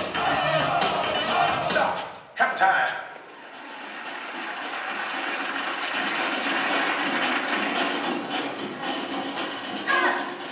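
Backing music that breaks off about two seconds in, then a short loud burst, followed by a steady wash of audience applause and cheering that slowly swells.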